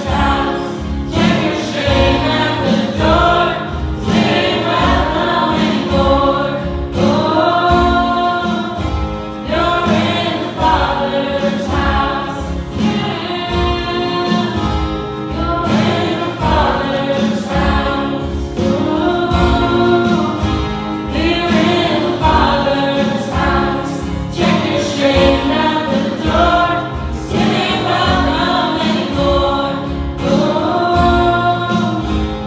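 A live worship band: several voices singing together over acoustic guitars, with a steady beat.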